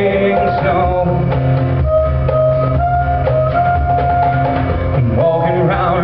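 Live band playing an instrumental passage: strummed acoustic guitar and drum kit, with a harmonica holding long notes that waver and bend near the end.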